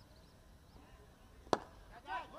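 A cricket bat striking the ball: one sharp crack about one and a half seconds in, over faint outdoor background.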